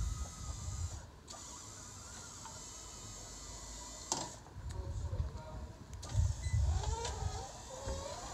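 Powered wheelchair platform lift on the back of a van folding up and stowing itself: a steady electric motor whine with a sharp click about four seconds in.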